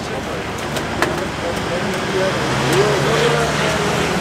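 Street ambience: steady road traffic noise with faint voices in the background, and a sharp click about a second in.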